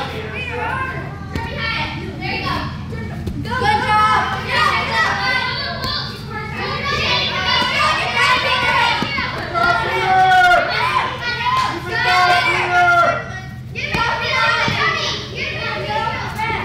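Several children's voices shouting and calling out over one another, with no clear words, over a steady low hum.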